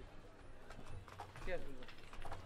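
Faint background voices of people talking, with a few light clicks and knocks, in a pause between loud amplified recitation.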